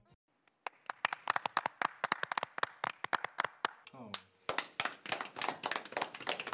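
A small group clapping, starting about half a second in, quick and uneven, with a few voices calling out among the claps.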